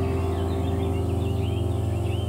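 Relaxing ambient background music: a held chord over a low drone, slowly fading, with bird chirps twittering throughout.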